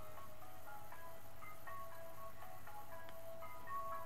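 Quiet instrumental backing music in a break between sung lines: a simple chiming melody of short high notes over one held note.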